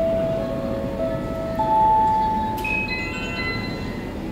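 Airport public-address chime: a short run of bell-like notes, each ringing on, entering about every half second to a second and rising in pitch. It marks the next boarding announcement.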